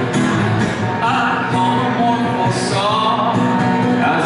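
A man singing to his own strummed acoustic guitar.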